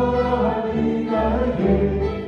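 String orchestra of violins, cello and double bass playing a klezmer arrangement of an Armenian folk dance song, a continuous melody moving in steps over sustained bass notes.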